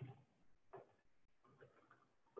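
Near silence with a few faint, scattered clicks of computer keyboard keys as code is typed.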